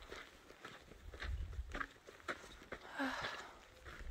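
Footsteps of a hiker walking on a dirt trail strewn with small rocks, in a steady series of crunching steps. A short spoken "uh" comes about three seconds in.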